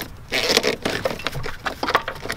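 Corrugated plastic wiring loom scraping and rustling against the hole and grommet in the car's bulkhead as a wiring harness is pushed through, with irregular small clicks and crackles.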